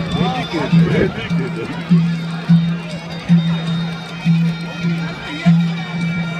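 Live traditional folk music: a shrill double-reed pipe plays a held, reedy melody over a big drum beating steadily, with crowd voices mixed in.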